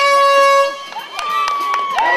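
Handheld air horn blast signalling the race start: one loud blaring note that dips in pitch as it sounds and holds for under a second, followed about a second in by a quieter, higher steady tone.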